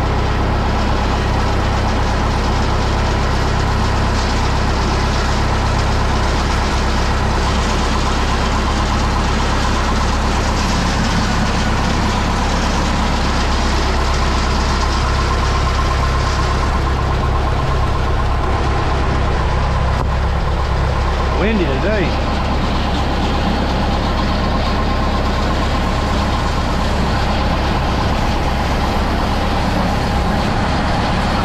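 Trailer concrete pump's engine idling steadily, with a brief wavering tone about two-thirds of the way through.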